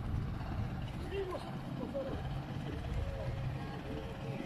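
A boat's engine running with a low, steady hum at sea, under the background chatter of people talking.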